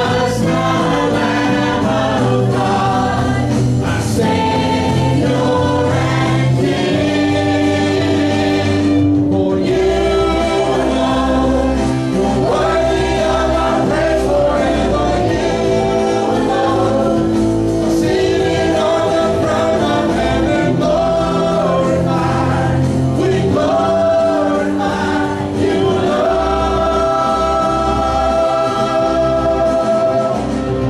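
Live church worship music: a praise band with keyboard, guitars and drums playing a gospel song while several voices sing together, led by singers on microphones.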